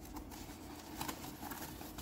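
Faint handling noise: a few light taps and rustles of hands and plastic graded-card slabs on a tabletop.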